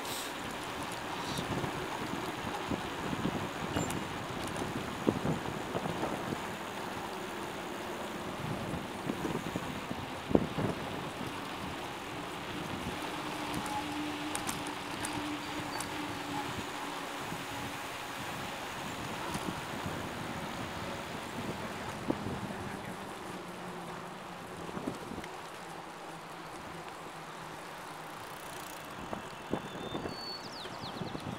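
Wind rushing over the microphone along with steady tyre and road noise from a moving bicycle, broken by scattered clicks and rattles and a sharp knock about ten seconds in.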